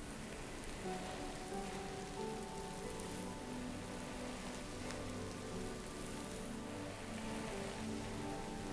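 Slow, calm spa music of soft held notes that change every second or two, over a steady rain sound.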